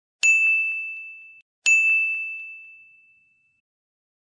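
Two bright ding sound effects about a second and a half apart, each a single high ringing tone that fades away, the second lasting longer. They go with a like-and-subscribe button animation.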